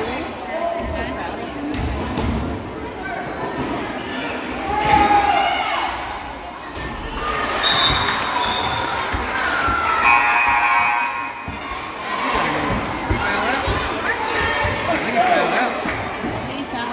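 Basketball bouncing on a hardwood gym floor as a player dribbles at the free-throw line, with voices and crowd chatter around the court.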